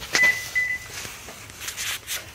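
A click followed by a single high electronic beep, held for under a second with a brief break midway, then faint handling noise near the end.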